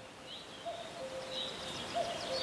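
Faint woodland ambience: birds chirping in short high calls, with a few lower held whistled notes, over a soft hiss.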